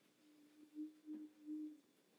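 A faint, steady low tone that swells three times in short pulses.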